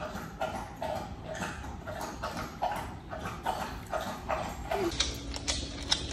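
Dog panting close to the microphone in even breaths, about two a second. In the last second or so its claws click on a hardwood floor.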